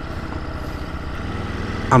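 Ducati Multistrada V2S twin-cylinder engine running as the bike is ridden along the road, a steady low rumble growing slightly louder, with wind and road noise.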